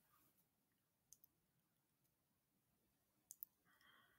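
Near silence with a few faint, short clicks, two of them close together about three seconds in.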